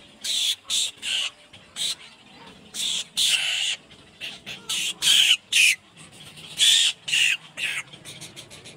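Egret nestlings giving harsh, squawking begging calls at a parent, about a dozen short calls in irregular bursts.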